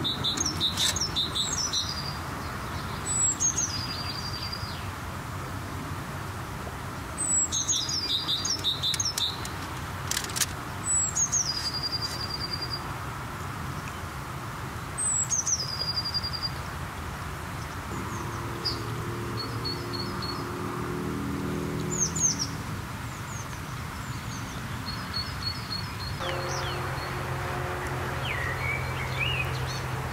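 Small songbird singing short phrases, each sliding down in pitch and ending in a brief trill, repeated every few seconds. A low steady hum comes in near the end.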